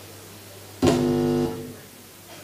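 A single chord on an amplified instrument. It starts suddenly about a second in, holds for under a second, then is released and fades, over a steady low hum.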